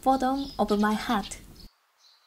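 A woman speaking in a bright, high voice, stopping about three-quarters of the way through, with silence after.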